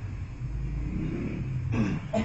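Low steady background rumble during a pause in a man's talk, with a brief sound of his voice near the end.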